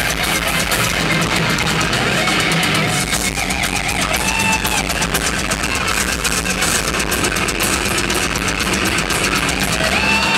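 Thrash metal band playing live: loud distorted electric guitar over a dense, steady wall of band sound, with some guitar notes bending up and down.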